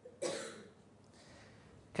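A single short cough from a man, about a quarter of a second in.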